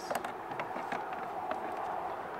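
A few small clicks from spring-loaded alligator clamps of a battery tester being unclipped from the battery terminals and handled, over a steady background hiss.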